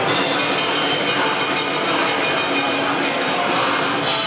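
A live heavy rock band playing loud: distorted electric guitars over drums in a dense, unbroken wall of sound.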